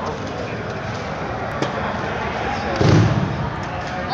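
A judoka thrown onto the tatami mat: a heavy thud of the body landing about three seconds in, over steady chatter from the gym crowd.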